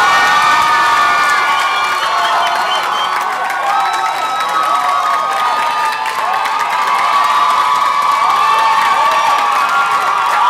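Audience cheering and screaming, with many high voices in long overlapping cries.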